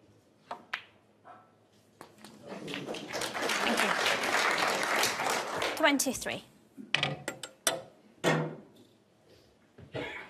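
Snooker cue tip striking the cue ball with a sharp click, then a second click as it meets the red. About four seconds of audience applause follow, rising and then fading, and then a few sharp clicks near the end.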